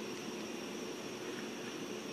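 Quiet steady hiss of room tone with a faint constant hum and no distinct events.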